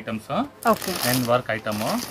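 Crinkly rustling of the clear plastic packaging around a saree as it is handled and lifted, under ongoing talk.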